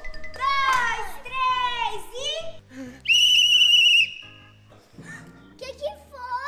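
Children's excited calls, then a whistle blown once in a single shrill, steady blast of about a second: a lifeguard's whistle stopping the children from going into the pool without an adult.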